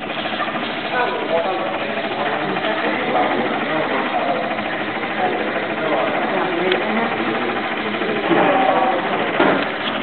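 Diebold voting machine's built-in printer printing the election results tape, a fast steady mechanical chatter much like a store receipt printer, with voices talking over it.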